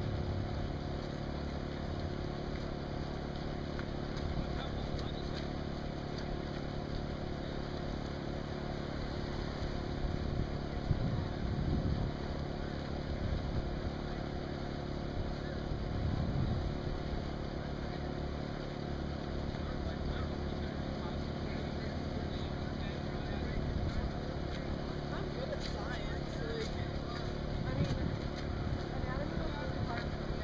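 Steady low droning hum with faint, unclear voices of people at times.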